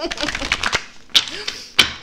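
A tarot deck being shuffled by hand: a rapid patter of card clicks, with two louder card slaps a little past one second in and near the end.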